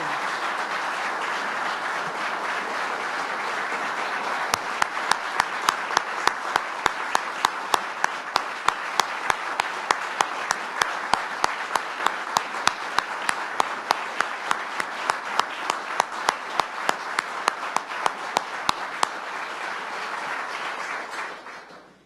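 A roomful of people applauding. From about four seconds in, one person's claps close to the microphone stand out sharply at about three or four a second. The applause dies away near the end.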